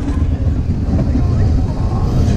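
Loud, steady low rumble of a spinning wild-mouse coaster car's wheels running along its steel track, heard from on board the car.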